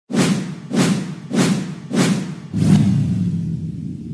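Title-sequence sound effects: five whooshing hits with a low thud in each, about two every second, the last one longer and trailing off into a low rumble that fades.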